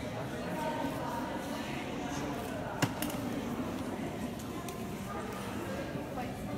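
Indistinct chatter of people in a large hall, with one sharp click about halfway through.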